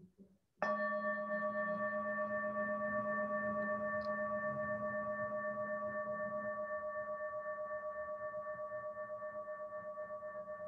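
A singing bowl struck once about half a second in, then ringing on in several steady tones with a slow, even pulsing, fading gradually.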